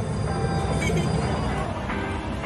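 Loud, steady din of an indoor arcade, with game machines and crowd noise and a heavy rumble underneath.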